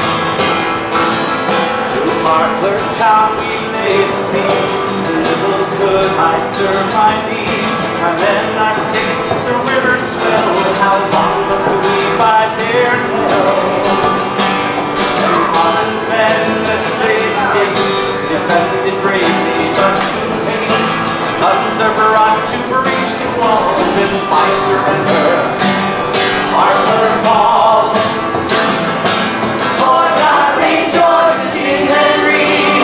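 Acoustic guitar strummed steadily in a folk song, with singing at times.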